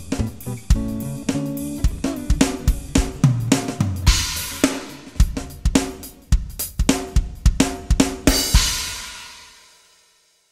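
Roland V-Drums electronic drum kit played as a groove of kick, snare and hi-hat over a two-acoustic-guitar backing track, with cymbal crashes about four seconds in and again near the end. The last crash rings out and fades to silence as the song ends.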